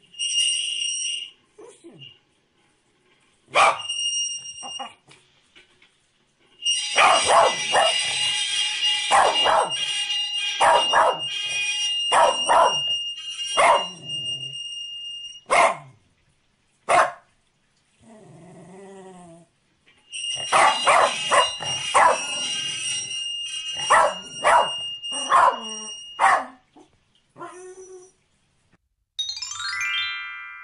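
A corgi barking over and over in sharp barks, in two long runs with a few single barks between. A high, steady electronic-sounding tone comes and goes with the barking.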